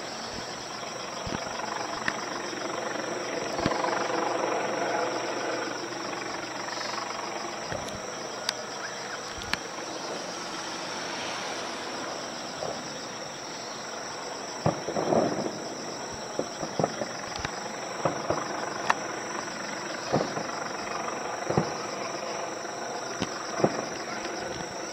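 Distant aerial fireworks shells bursting: a scattered series of sharp cracks and thuds, more frequent in the second half. A steady high insect chirring runs underneath, and a broader rumble swells a few seconds in.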